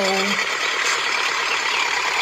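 Miniature DIY toy tractor's small motor and gears running steadily as it drives forward pulling a loaded trailer. It makes a dense, even buzz with a faint steady whine.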